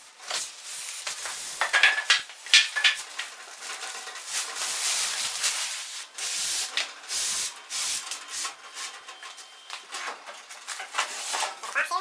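Cardboard box flaps and packaging being pulled and handled: a continuous scraping and rustling of cardboard and plastic wrap, with many sharp crackles and a few short squeaks.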